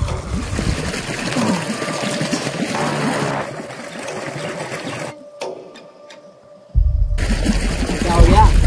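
River water splashing and running around people standing in it, with music underneath. The sound drops quieter for a moment, then a sudden loud low rumble comes in near the end.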